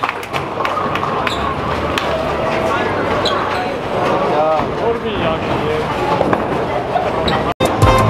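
Bowling alley din: background voices with a steady clatter of knocks and clicks from balls and pins. It cuts out briefly near the end, and music starts right after.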